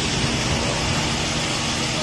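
An engine idling steadily, a low even hum with a steady hiss over it.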